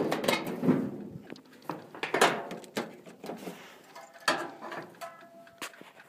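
The steel hood of a 1951 International pickup being unlatched and lifted open: a sharp knock at the start, then scattered clicks and clunks, with a brief pitched creak about two-thirds of the way through.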